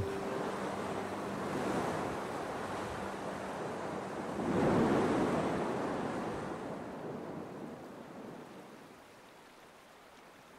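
Sea surf: waves washing and breaking over offshore rocks, one swell louder about halfway through, then dying away toward the end.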